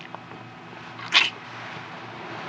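A short breathy sound from a couple kissing, heard once about a second in over a quiet steady background.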